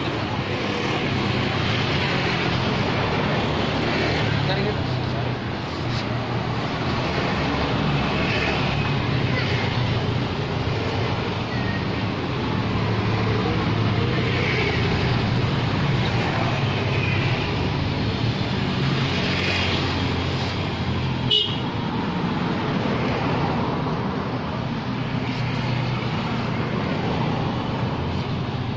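Steady roadside traffic noise, with vehicle engines running. A single sharp click comes about three-quarters of the way through.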